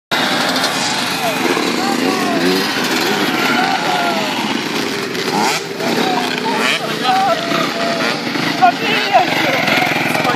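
Several motocross bike engines revving, their pitch rising and falling as the bikes ride past, with voices mixed in.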